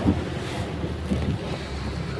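A boat engine running with a steady low rumble, wind buffeting the microphone, and water washing past.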